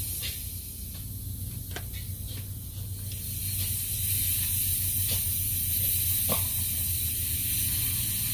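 Pressurized propellant hissing out of a shellac aerosol can through a cut in its bottom made with a side-cut can opener: a thin, high, steady hiss that grows louder about three and a half seconds in. The can is still under pressure and is being slowly vented. A few faint clicks are heard.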